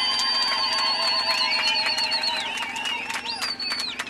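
Several voices ululating (zılgıt): high, trilling held notes that overlap, with a last one rising near the end before they die away.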